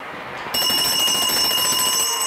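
An electronic alarm bell rings with a steady, high-pitched tone made of several notes. It starts about half a second in, over a noisy room background.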